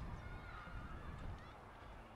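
Low rumble of a passenger train moving away and fading out, dying down about halfway through. Short, thin high calls that slide in pitch sound faintly over it.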